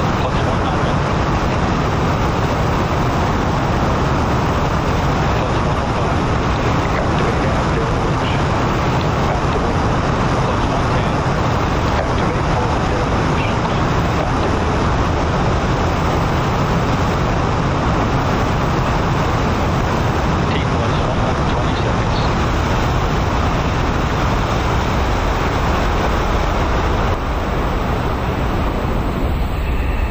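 A five-segment solid rocket booster firing on a static test stand, a loud steady rush of exhaust noise with crackle in it. It eases slightly near the end as the two-minute burn draws to a close.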